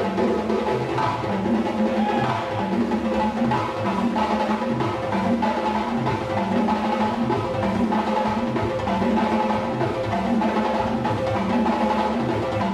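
Drum-led music: hand drums playing with a low bass figure that repeats about every second and a quarter, over steady held tones.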